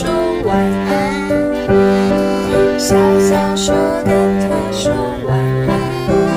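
A woman singing a slow, gentle children's-song melody over keyboard accompaniment.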